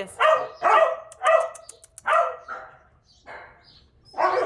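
A dog barking: a run of about five short barks, four close together, then a fainter one near the end.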